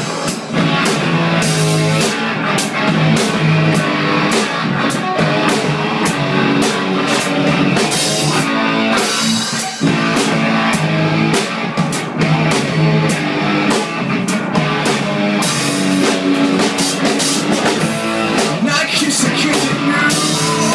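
Rock band playing loudly in a room: electric guitars and a steadily beating drum kit in an instrumental passage between sung lines.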